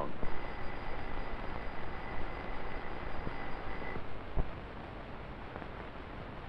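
Electric bell ringing, its hammer striking the gong in a steady, even ring that stops about four seconds in, leaving only hiss.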